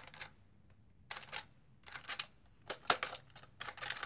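Plastic clicks of a Nerf Elite blaster being primed and dry-fired with no darts loaded, so it doesn't shoot: about five short bursts of clacks, roughly one a second.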